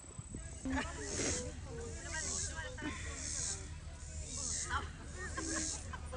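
Distant voices of soccer players calling out across an open field, over a steady low rumble, with a soft hiss that swells and fades about once a second.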